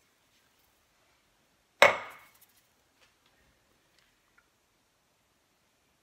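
A single sharp knock, an object set down hard on the kitchen counter, dying away over about half a second, followed by a few faint ticks.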